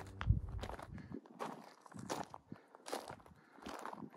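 Footsteps on loose rocky gravel: a slow, uneven run of separate steps, roughly one a second.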